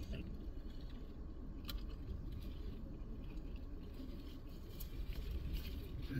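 Quiet car-cabin background: a low steady rumble with a few faint, sharp clicks and small handling noises.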